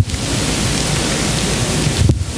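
A click, then a steady loud hiss of static from the microphone and sound system, cutting off at the end.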